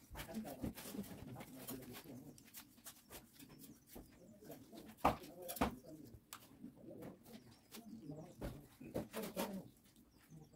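Low cooing bird calls, dove-like, with scattered short clicks and knocks; the sharpest knock comes about five seconds in.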